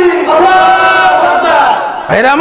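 A man chanting long, drawn-out sung notes into a microphone, in the melodic intoned style of a Bengali waz sermon. He holds one pitch for over a second, then the note slides down near the end.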